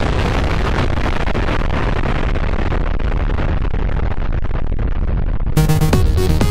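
Nuclear explosion sound effect: a long, loud, noisy blast with a deep rumble, its hiss slowly dying away. About five and a half seconds in, electronic dance music starts.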